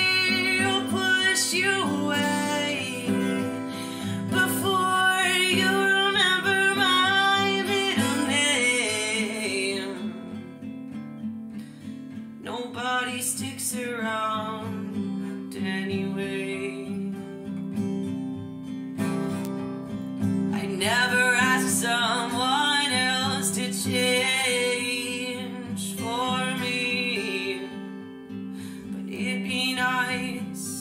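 Acoustic guitar with a capo, strummed steadily, with a woman singing over it in phrases and a quieter, mostly guitar stretch around the middle.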